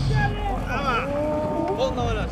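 A person's voice speaking over a steady low rumble.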